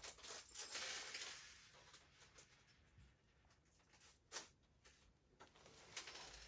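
Near silence: room tone with a few faint, soft handling sounds, one of them about four and a half seconds in.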